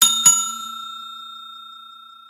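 Bell ding sound effect for a notification-bell button: two quick strikes about a quarter second apart, then a bright ringing tone that slowly fades.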